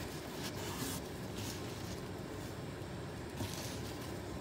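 Gloved hand rummaging through the shredded bedding of a worm bin: faint, soft rustling in a few short patches over a low steady background noise.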